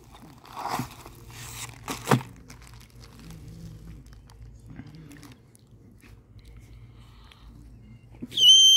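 Plastic mailer bag and packaging crinkling as the contents are pulled out, mostly in the first two seconds, then quieter.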